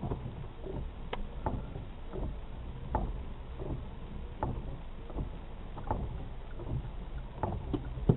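Low, steady engine rumble of an idling vehicle heard from inside its cab, with scattered light taps and clicks.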